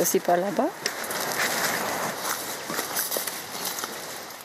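Leaves and twigs of taina (gardenia) bushes rustling and crackling as flowers are picked by hand among the branches.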